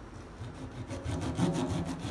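Kitchen knife sawing back and forth through the skin of a whole flounder as it is scored, in a quick run of short strokes starting about half a second in.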